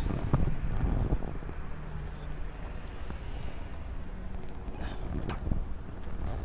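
Street ambience: road traffic rumbling with wind buffeting the microphone, and a brief sharp sound near the end.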